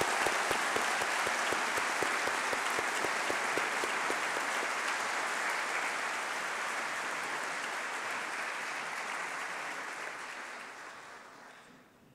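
Audience applauding in a large hall, dense clapping that dies away near the end.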